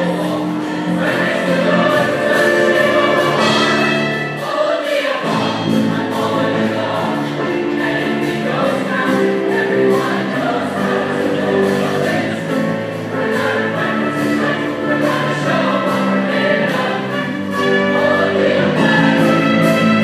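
High school show choir of about 38 mixed voices singing with a live pit band. The low accompaniment drops out briefly about five seconds in, then comes back under the voices.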